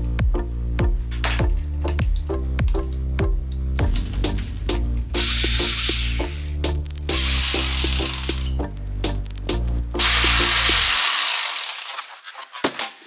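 Electric jigsaw motor run three times in short bursts of about a second each, over background electronic music with a steady beat.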